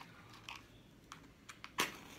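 A wooden match struck on the side of a matchbox: one sharp scratch near the end, after a few faint clicks of handling the box and match.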